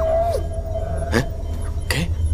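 Calls of the alien wake angel creatures, a film sound effect: a held tone that bends downward, then two short sharp cries, over a low steady spaceship hum.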